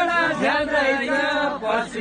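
A group of voices singing a Nepali folk song together, several voices overlapping.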